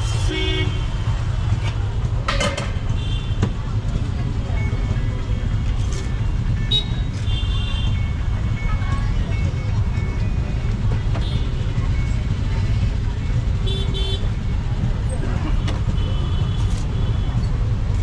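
Street traffic rumbling steadily, with short vehicle horn toots every few seconds and a few clinks of a spoon against a steel bowl.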